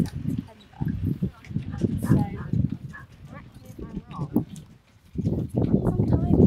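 A woman's voice talking and laughing softly, close to a horse, with a loud low rumbling noise on the microphone that builds from about five seconds in.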